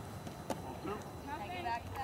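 Faint, distant voices of players and spectators calling out across a softball field, with one sharp knock about half a second in.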